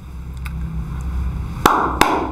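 A single sharp knock about one and a half seconds in, followed by a brief hiss, over a steady low rumble.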